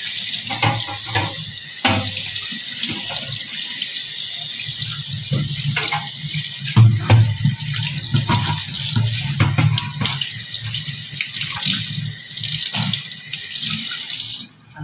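Kitchen tap running, the water stream splashing onto a metal silver tray held in a stainless steel sink while hands rub and rinse it. Scattered light clicks, with one louder moment about seven seconds in.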